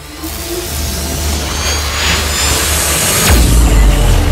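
Cinematic logo-intro sound effect: a swelling whoosh that builds in loudness over a low drone, ending in a deep bass hit a little over three seconds in.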